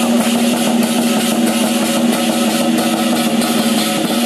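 Lion-dance percussion of drum, cymbals and gong playing a fast, continuous roll, with a steady ringing tone underneath.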